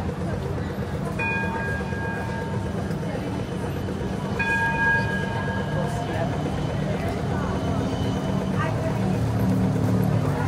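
Melbourne tram approaching and passing through a city intersection, its low running hum building over the last few seconds. Two sustained ringing tones, each about a second long, come about one and four seconds in, over street chatter.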